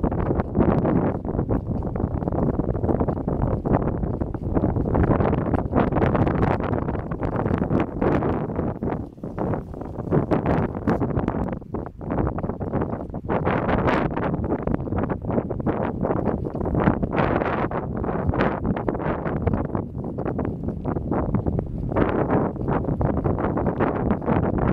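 Wind buffeting the microphone, a loud, uneven noise that rises and falls in gusts, dropping briefly a couple of times.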